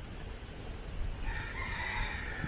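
A rooster crowing: one long call that begins a little over a second in, over a low street rumble.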